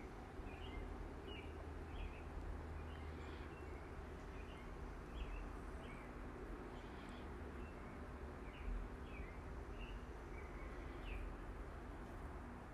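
Faint, short, high chirps repeating about once or twice a second, like a small bird chirping in the background, over a low steady hum.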